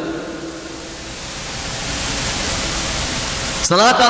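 Steady hiss of recording noise with no clear pitch, swelling gradually louder through a pause in speech; a man's voice comes back near the end.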